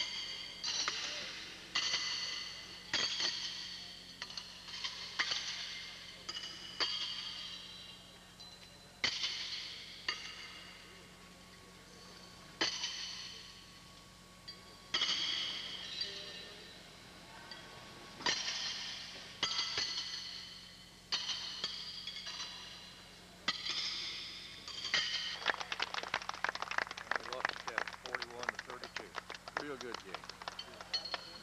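Steel horseshoes striking steel stakes and other shoes, each hit a sharp clang that rings on and dies away, about every one to two seconds across the courts. Near the end comes a burst of clapping.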